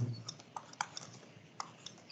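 A few faint, scattered light clicks, the clearest about a second in and again near the end.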